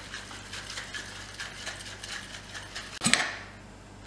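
Stainless steel cocktail shaker being shaken, its contents rattling rapidly inside, then a single sharp clank about three seconds in.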